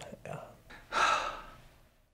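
A man's quiet "yeah", then a long breathy sigh about a second in.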